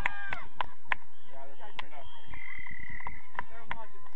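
Young players' voices calling out across a rugby pitch, with scattered sharp knocks and a brief high, steady tone lasting just under a second about halfway through.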